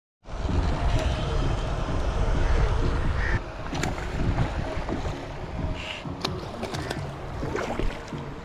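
Wind buffeting the microphone with a heavy rumble that drops off suddenly after about three seconds. Then a hooked fish splashes and thrashes at the water's surface close to the bank, in several sharp splashes.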